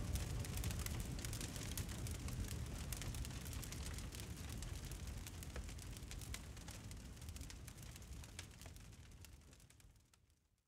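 Faint noisy ambience at the close of a music track: a low rumble with a dense scatter of small crackles and no melody, fading slowly to silence by the end.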